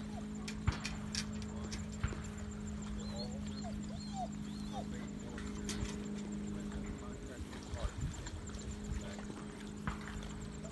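Faint, distant speech over a low wind rumble on the microphone, with a steady low hum and a few sharp clicks.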